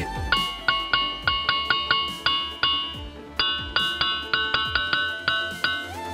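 Diabase boulders of a ringing-rocks field being struck in quick succession. Each blow gives a clear, bell-like ringing tone, at a few different pitches, at about four or five strikes a second, with a short pause about three seconds in.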